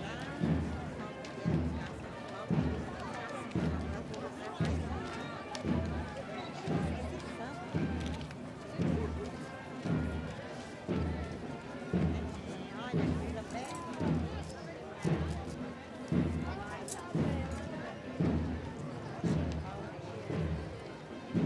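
A parade drum beating a slow, steady march, about one low beat a second, over the chatter of a crowd of voices.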